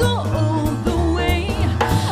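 Upbeat New Year's pop song with a driving drum kit and bass, a sung vocal line and saxophones.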